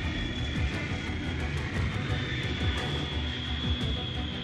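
Background music with a steady high held tone over a dense low rumble, flecked with faint ticks.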